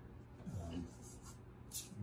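Faint, light scratchy rubbing on collage paper as it is smoothed down onto a birch panel coated with wet gloss medium.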